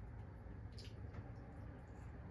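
Faint eating sounds of someone pulling meat off a chicken wing with the fingers and chewing: a couple of small wet clicks about a second in, over a low steady hum.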